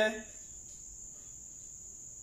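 A cricket's steady, high-pitched trill going on without a break, with the tail of a man's word at the very start.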